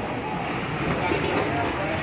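Indistinct voices of several people talking nearby over a steady hum of city street noise and traffic.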